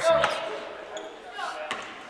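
Basketball bouncing on a hardwood gym court, with faint voices echoing in the hall.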